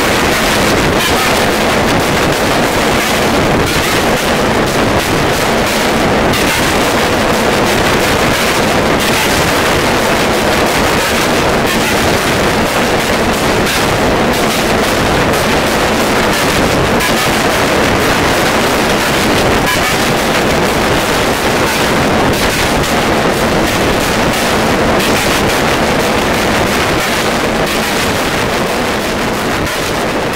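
Harsh noise music: a loud, dense wall of distorted static covering the whole range from deep rumble to hiss, with no clear beat, easing off slightly near the end.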